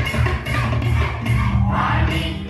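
Music accompanying a Sri Lankan kolam folk-drama dance: a steady drum beat under a singing voice, with one note held from a little past the middle.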